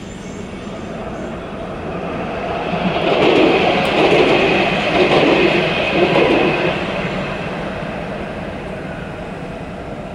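A Dubai Tram light-rail train passing close by, its running sound swelling for a few seconds and loudest in the middle before fading away. A steady high whine rides on top while it is nearest.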